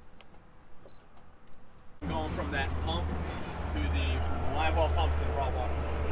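A few faint clicks, then from about two seconds in, indistinct talking over a steady low rumble.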